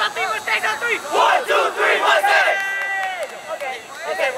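A soccer team shouting together in a huddle cheer, many voices overlapping, with one long held shout late on that falls away at its end.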